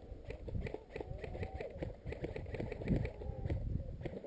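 Faint voices calling out at a distance, with a steady run of light, quick ticks in the background.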